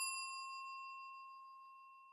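Notification-bell sound effect: the ring of a single bell ding, struck just before, dying away slowly as one clear, steady tone.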